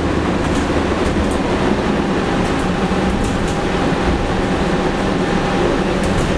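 Cabin noise inside a 2017 New Flyer XN40 Xcelsior CNG bus under way: the steady rumble of its Cummins ISL-G natural-gas engine and road noise, with faint rattles.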